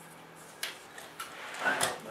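Light clicks and handling noise from a large 1/12-scale model trailer being rolled back by hand to hitch onto its model truck, with a louder brush of noise near the end.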